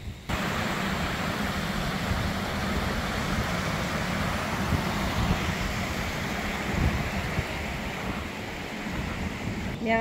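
Mountain creek rushing and cascading over rocks: a steady rush of water.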